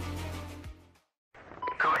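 Electronic background music with a steady deep bass fades out in the first second. After a brief silence, a radio channel opens with a short beep and a voice begins over the radio.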